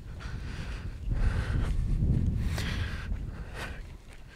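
Wind rumbling on an outdoor microphone, swelling louder through the middle, with the soft breaths and footsteps of a man walking.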